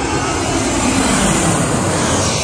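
Loud, steady engine noise of an airplane passing low overhead.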